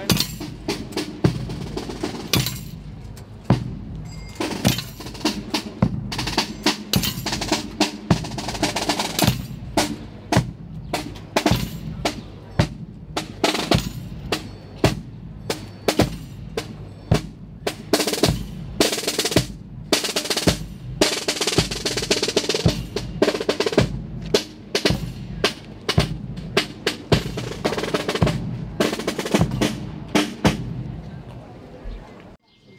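Procession drums, a bass drum and a snare drum, beating a steady march rhythm.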